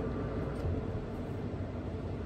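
Steady low background hum with faint hiss and no distinct events: room noise.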